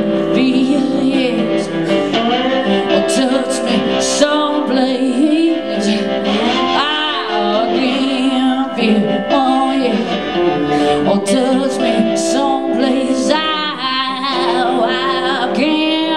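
Live blues rock: a woman sings long, wavering wordless vocal lines with vibrato into a handheld microphone over the band's accompaniment.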